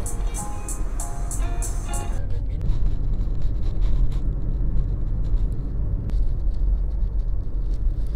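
Background music with a steady beat stops about two seconds in, leaving the steady low rumble of a car driving on the road, heard from inside the cabin.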